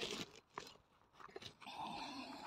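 Faint handling noises while digging in loose soil: soft crunching and scraping with a few small clicks.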